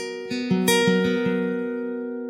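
Steel-string acoustic guitar being picked: several separate notes in about the first second, then the chord is left to ring and slowly fade.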